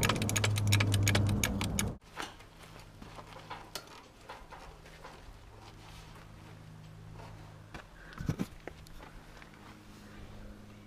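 Rapid metallic clicking for about two seconds, then faint scattered clinks and knocks, as a boat trailer is shifted by hand a few inches into position.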